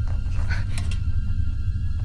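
Eerie background score: a deep, steady, low rumbling drone, with a few faint short noises about half a second in.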